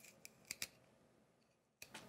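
Mostly near silence, broken by a few faint, short crunching clicks as a carrot is twisted against the blade of a handheld spiralizer: two close together about half a second in and another near the end.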